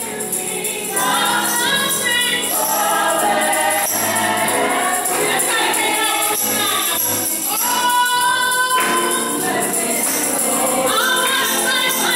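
A small group singing a gospel song, a woman's lead voice holding long notes over the others, with hand claps and a jingling beat.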